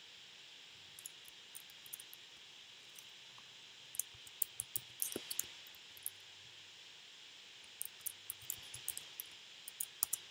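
Computer keyboard typing: two short runs of keystrokes about four seconds in and again near the end, with a few lighter clicks early on, over a steady faint hiss.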